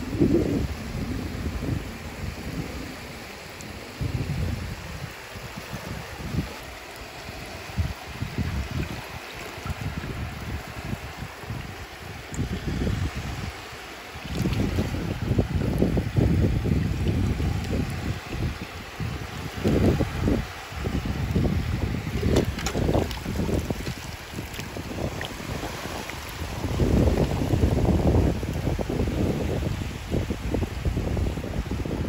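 Wind buffeting the microphone in uneven gusts, over shallow seawater lapping and swishing at the shoreline as a hand dips into it.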